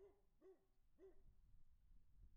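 Near silence, with three faint short hooting calls about half a second apart in the first second or so.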